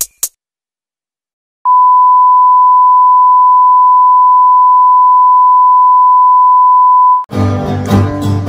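A loud, steady 1 kHz reference beep of the kind that accompanies colour bars, one unbroken tone lasting about five and a half seconds. It stops near the end and acoustic guitars of a string band start playing.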